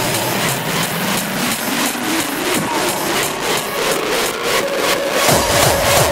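Hardcore electronic music: a dense, noisy synth build-up with a slowly rising tone, and a fast, heavy kick drum coming in about five seconds in.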